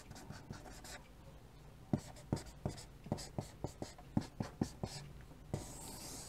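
Chalk writing on a chalkboard: a string of short, faint taps and scratches as characters and a circular arrow are drawn, coming quickly through the middle.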